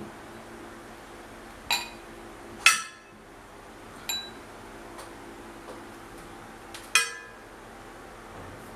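Glass stemware (wine and champagne glasses) being set down on a glass tabletop: four sharp clinks with a brief glassy ring, the second one the loudest.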